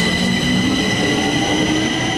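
Metro train running, a steady whine over a continuous rumble.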